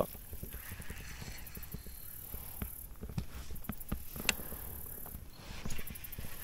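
Quiet scattered clicks and light taps from a baitcasting rod and reel being handled in a plastic kayak, with a couple of sharper clicks about four seconds in.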